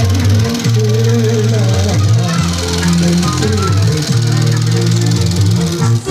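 Loud film soundtrack music with a heavy bass line, played through the screening's loudspeakers. A fine, fast, even whirr sits above the music: the running 35 mm film projector close by.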